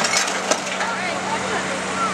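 Faint background voices over a steady low engine hum, with two sharp cracks in the first half second.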